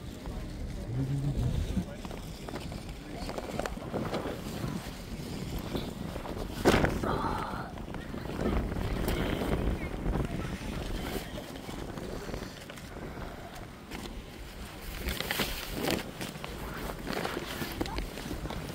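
Outdoor ambience of wind rumbling on a phone microphone, with indistinct voices. There is a single sharp knock about seven seconds in.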